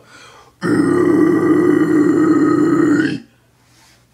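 A man's low scream: one loud, gritty guttural growl of the kind used in deathcore and metalcore vocals, held for about two and a half seconds, starting about half a second in and cutting off abruptly.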